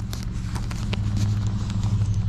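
A steady low motor hum with a fast, even pulse, with a few light clicks from a leather tassel and metal ring being handled.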